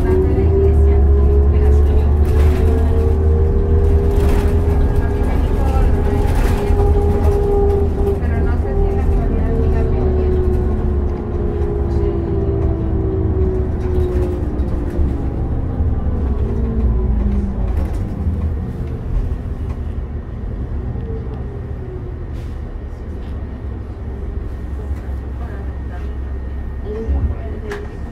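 Inside a 2002 New Flyer D40LF diesel bus under way: a deep steady engine rumble with a drivetrain whine that rises slightly, holds, then slides down in pitch over several seconds as the bus slows. The whole sound grows quieter over the second half.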